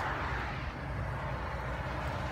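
Steady outdoor background noise of road traffic, a low rumble with an even hiss.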